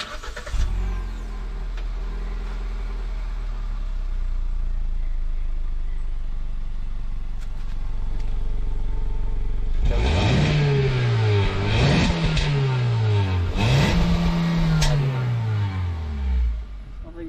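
Kia Sonet 1.2-litre four-cylinder petrol engine heard at the exhaust, starting up and idling steadily. About ten seconds in it is revved three times, each rev rising and falling in pitch.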